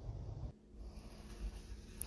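Faint steady hum of a water fountain's refrigeration compressor running to chill the water reservoir, the cooling called for by a newly replaced thermostat.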